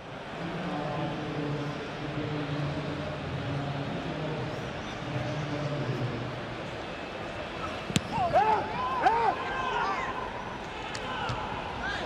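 Ambience of a football stadium without spectators: a steady wash of background noise with faint distant voices. About eight seconds in there is a single sharp knock, then several loud shouted calls from people on the pitch.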